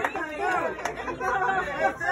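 Indistinct chatter: people talking over one another at a dinner table, with no clear words.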